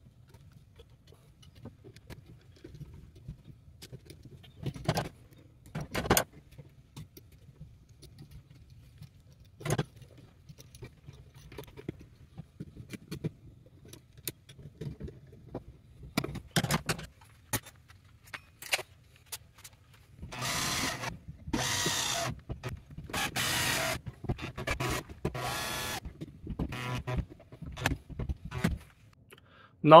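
Metal receptacles being fitted into metal electrical boxes and screwed down with a hand screwdriver: scattered sharp clicks and knocks, then, in the last third, four or five gritty scraping runs of about a second each as the screws are driven.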